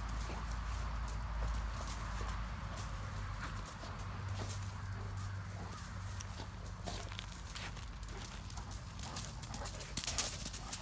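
A Great Dane scuffling and nosing through dry fallen leaves and pushing a hard plastic ball: scattered small crunches and rustles over a steady low background rumble.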